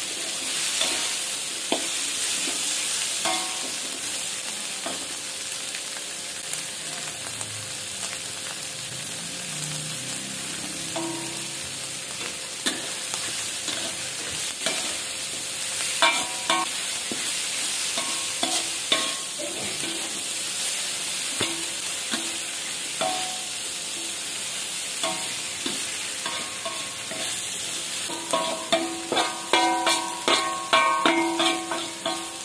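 Dried anchovies and sliced vegetables sizzling in hot oil in an aluminium wok, with a steady hiss, while a wooden spatula stirs them, scraping and tapping against the pan. The scraping strokes come quicker and louder near the end.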